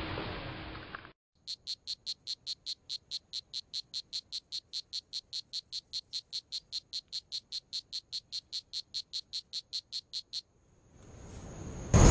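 A frog calling: a long, very even series of short high-pitched chirps, about four or five a second, lasting about nine seconds. It follows a second of hissing noise that cuts off suddenly.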